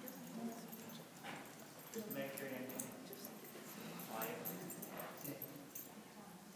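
A faint, distant voice calling a few short words in separate bursts, a handler directing a dog around an agility course.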